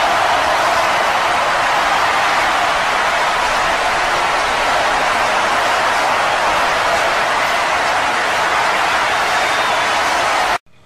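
A loud, steady hiss of noise with no tone or rhythm in it.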